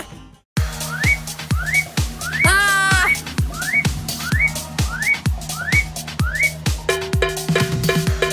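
Upbeat electronic background music that starts after a short silent gap, with a steady kick drum about every two thirds of a second and short rising synth blips. A brief warbling, whistle-like tone about two and a half seconds in, and a repeating synth chord pattern joins near the end.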